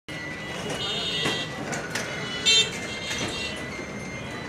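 Busy city street traffic with several vehicle horns honking in short toots over the running engines; the loudest toot comes about two and a half seconds in.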